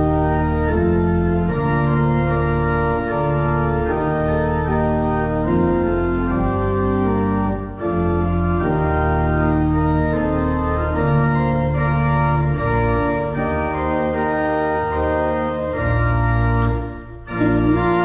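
Organ playing the instrumental introduction to a school song, in held chords over a moving bass line. It breaks off briefly near the end, just before the singing begins.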